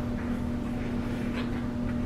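Hands kneading soft biscuit dough in a plastic mixing bowl: a few faint rubbing, squishing strokes over a steady low hum and rumble.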